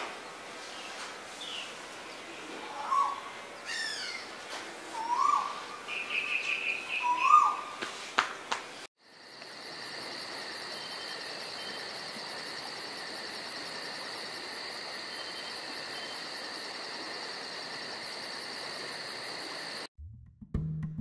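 Birds calling: a few short rising calls and a quick run of chirps. About halfway through this breaks off suddenly and gives way to a steady insect drone with a fast, high pulsing.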